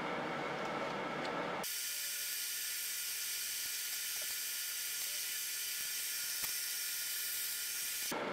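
A steady high hiss with a faint click or two, starting abruptly about a second and a half in; before it, a short stretch of duller, low noise.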